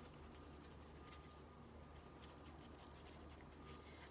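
Near silence: room tone with a steady low hum and a few faint rustles of a sheet-mask pouch being shaken and handled.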